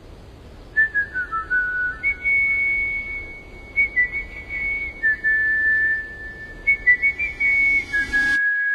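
A high, pure, whistle-like melody of long held notes stepping between a few pitches, opening a pop song track.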